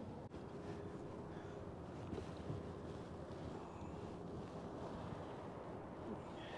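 Steady wind noise and water around a small aluminium fishing boat on a lake, with a faint steady hum in the first half and a few light ticks.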